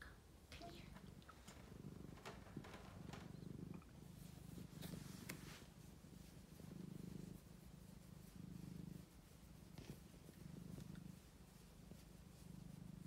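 Domestic cat purring while its head is stroked, a low, faint purr that swells and fades in a steady rhythm of pulses about a second long. A few faint clicks of handling fall in the middle.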